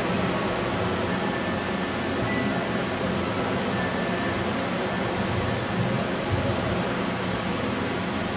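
Steady hiss and hum of background noise with faint music underneath, a few held notes coming and going.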